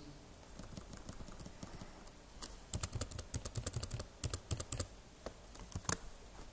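Computer keyboard keys tapped in quick runs as text is deleted in a code editor. The tapping starts about two and a half seconds in and thins to a few single taps near the end.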